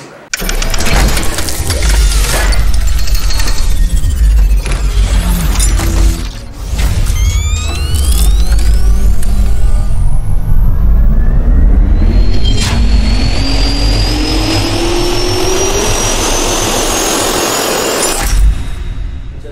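Television station ident soundtrack: heavy bass-laden music with a jet-turbine spool-up sound effect. After a brief dip about six seconds in, a whine climbs steadily in pitch to the end.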